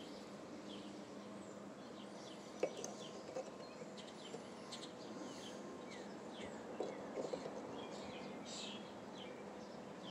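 Quiet outdoor background with faint bird chirps, broken by a few light clicks and taps as a dial caliper is handled against a centrifugal clutch's bore.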